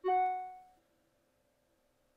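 A single chime-like pitched note, struck once and dying away in under a second, like a computer alert sound.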